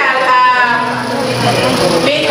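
A woman's voice amplified through a microphone and PA, wavering and drawn out in long held tones, as in singing.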